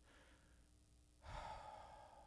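A man's faint breath, then a longer sigh-like exhale starting a little over a second in and lasting about a second.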